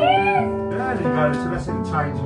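Jazzy background music with plucked guitar. Over it, a child's high-pitched excited cry rises and falls in the first half-second, with more voices later.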